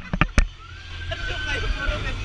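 A few sharp knocks as a hand bumps the camera, then one long faint high voice held for over a second over a steady low rumble, on a swinging fairground pirate-ship ride.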